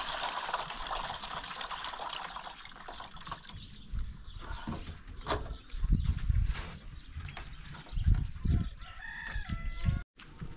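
Water pouring and trickling into a plastic basin as rice is rinsed, followed by several low gusts of wind buffeting the microphone. A rooster crows briefly near the end.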